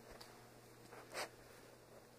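Near silence, broken by one brief, soft rustle a little over a second in.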